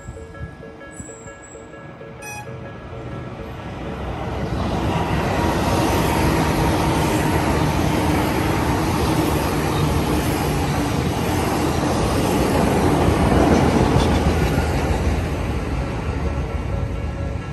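Tobu Tojo Line electric commuter train passing through a level crossing. Its rumble builds from about four seconds in, holds steady, and peaks near the end. The crossing's warning bell rings in a steady repeating pattern, plain at the start and audible again near the end.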